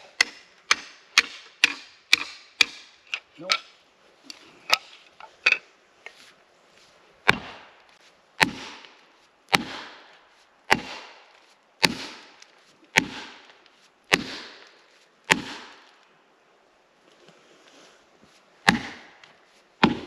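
Poll of a five-pound axe driving plastic felling wedges into the back cut of a standing pine. Quick strikes come about two a second at first, then the swing settles into a steady pace of about one heavy, ringing blow a second, pauses, and ends with two more blows.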